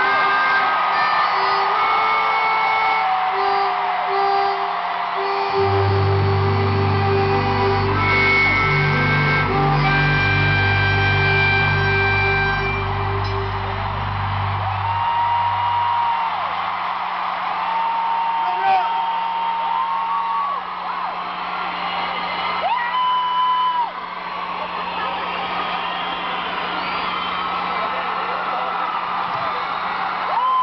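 A live rock band plays the closing bars of a song, with held chords and heavy bass notes that stop about halfway through. After that comes a large crowd cheering and whistling.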